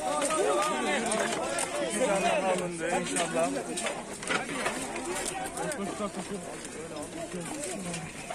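Rescue workers' voices talking over one another in a close crowd, several speakers at once.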